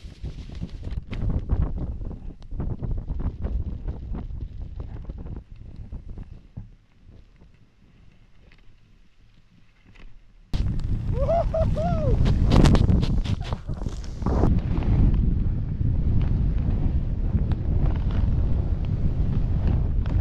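Snowboard ride recorded on an action camera: wind buffeting the microphone and the board sliding and scraping over snow, with scattered knocks. It goes quieter for a few seconds in the middle, then cuts back in louder, with a short voice sound just after.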